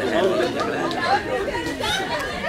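Several people talking at once: overlapping conversation.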